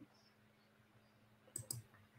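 Near silence: room tone with a faint steady hum, and a few short faint clicks near the end.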